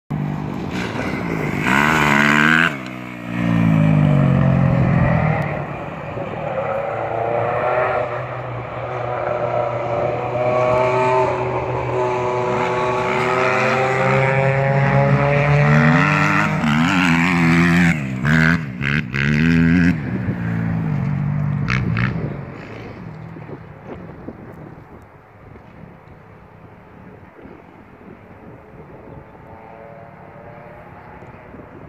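Kawasaki KX250F four-stroke single-cylinder motocross bike being ridden hard, its engine note climbing and falling repeatedly as it revs and shifts through the gears. About two-thirds of the way through, the engine fades away to much quieter.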